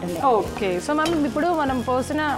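A spatula stirring food in a pan on the stove, with a light sizzle of frying, under a woman's voice talking.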